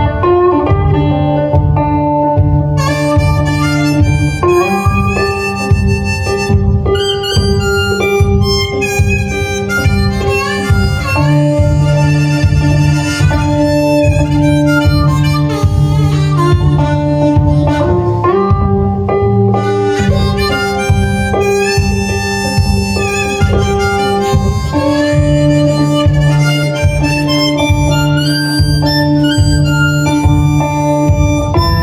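Harmonica played from a neck rack, holding and bending notes as the lead line over a fingerpicked resonator guitar that keeps up a steady bass beat.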